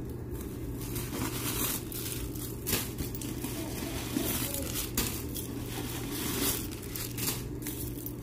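Tissue paper crinkling and rustling in irregular bursts as the paper stuffing is handled and pulled out of a new handbag, with a couple of sharp clicks.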